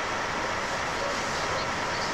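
Steady, unchanging hiss-like noise with a faint steady high tone running through it.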